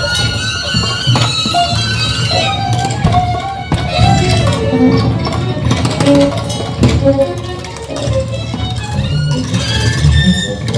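Live improvised duet for violin and percussion: short plucked and bowed violin notes scattered over sharp clicks and knocks, with a steady low drone beneath.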